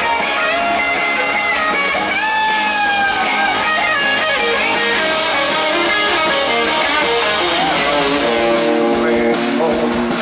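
A live rock band playing an instrumental passage with electric guitars to the fore, some long held notes sliding in pitch.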